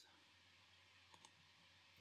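Near silence: room tone, with two faint computer-mouse clicks in quick succession just over a second in.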